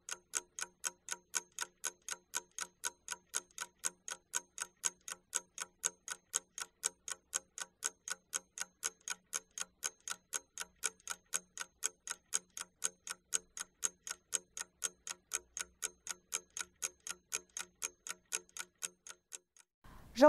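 Clock ticking sound effect with even, pitched ticks about four a second, used as a working-time timer while a task is being done; it stops just before speech resumes.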